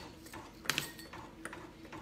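A few light clicks and taps from pins and fabric being handled as a patch is pinned onto a onesie. The clearest click comes about two-thirds of a second in.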